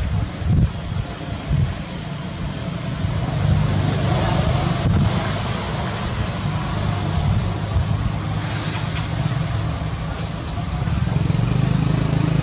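Steady low hum of an engine running, over outdoor background noise.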